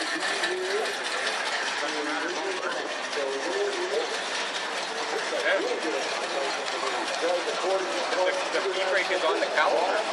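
Indistinct chatter of several people talking at once, over a steady background noise.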